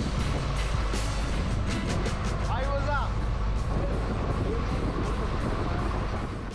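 A boat engine running with a steady low rumble. A voice calls out briefly around the middle, and music plays over it.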